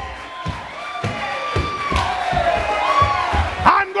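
Church music of held chords with drum hits about twice a second, under a congregation shouting and cheering.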